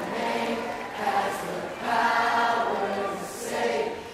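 Choir of voices singing a worship song with little or no accompaniment, in long held notes that swell and fade.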